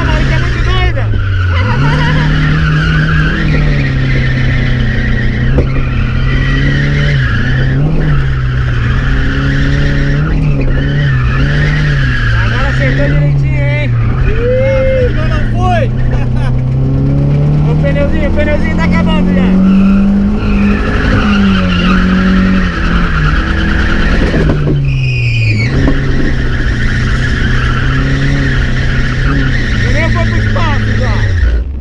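A stock Chevrolet Omega's engine revving up and down while its rear tyres squeal in a drift. The engine pitch rises and falls again and again, peaking about two-thirds of the way through, over the continuous hiss of the tyres.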